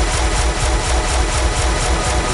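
Electronic house track played over the club sound system, with a steady pulsing kick drum under a dense wash of noise.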